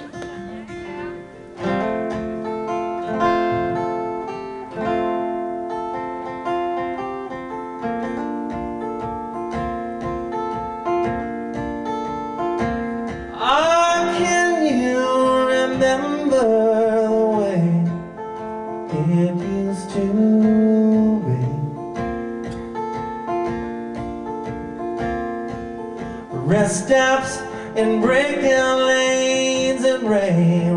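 Live solo acoustic guitar playing a song's opening, then a man's voice singing the melody over it from about 13 seconds in, pausing, and coming back in near the end.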